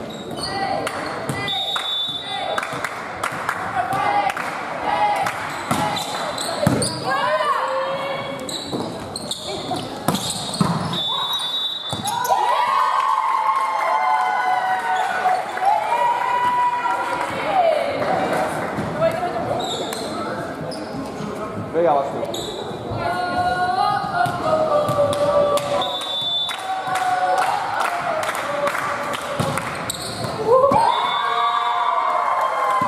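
Volleyball game sounds in a large sports hall: the ball struck again and again with sharp smacks, and players shouting and cheering. A referee's whistle gives three short blasts: one near the start, one about a third of the way in, and one near the end.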